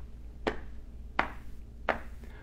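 Hands patting on thighs, tapping out a slow, steady beat: three pats about three-quarters of a second apart.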